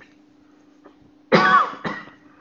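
A man coughs twice, the first cough about a second and a half in and a shorter one just after.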